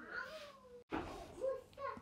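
A domestic cat meowing twice in short calls, the first falling in pitch.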